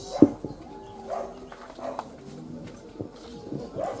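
A microphone being handled as it is passed from one person to another. There is a sharp thump about a quarter second in, then a few softer knocks, with faint voices in the background.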